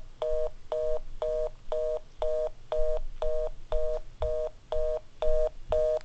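Telephone fast busy (reorder) signal: a two-note electronic tone beeping in short, even pulses about twice a second.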